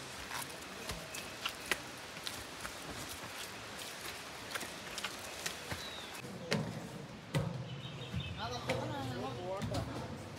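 Footsteps climbing stone steps, a short sharp click about every half second over a steady outdoor hiss. From about six and a half seconds in, faint voices join.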